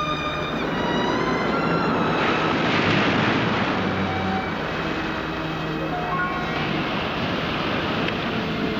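Heavy surf breaking over rocks, a dense steady wash of water noise that is loudest about three seconds in. Under it runs orchestral background music with long held notes.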